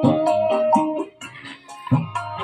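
A dangdut song with a plucked-string melody over a steady beat, playing through a small speaker driven by a homemade mini amplifier built from a dead CFL lamp's transistor and powered from a 5 V phone charger. The music drops quieter for a moment a bit past halfway, then comes back loud.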